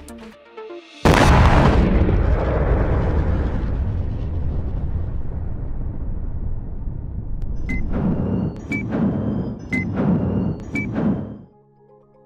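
Explosion sound effect: a sudden blast about a second in, then a long rumble that slowly fades over about ten seconds, with four sharp cracks about a second apart near the end.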